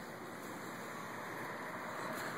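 Steady outdoor background noise: a constant, even rush with no distinct events.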